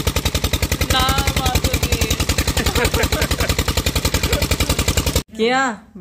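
Engine running steadily with a rapid, even putt, about a dozen beats a second; it cuts off suddenly about five seconds in.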